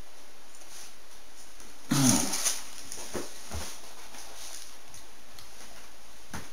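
A man's voiced "mmm" falling in pitch about two seconds in, followed by a few short, faint sounds from his mouth and throat, made while he eats a polvorón.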